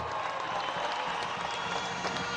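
A large crowd applauding, a steady even clatter of many hands with faint voices mixed in.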